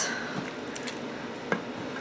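Spatula stirring cooked green beans and bacon in broth in an Instant Pot's steel inner pot: soft, wet squishing, with a faint tap about one and a half seconds in.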